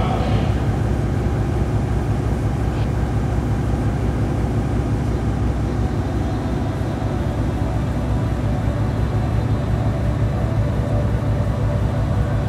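A steady, loud, low droning rumble with a hum in it, unbroken throughout.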